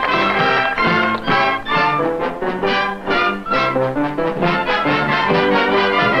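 A cabaret dance band playing a lively swing tune, trumpets and trombones in short notes over a steady beat.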